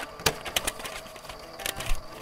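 Computer keyboard keys clicking irregularly as someone types, with one sharper click a quarter of a second in.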